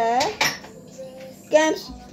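A child's voice saying short words, with a sharp clink like dishes or cutlery about half a second in.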